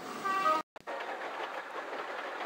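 Train sound effect: a short horn sounding several notes at once in the first half-second, a brief break, then the steady rattle of a train running on rails.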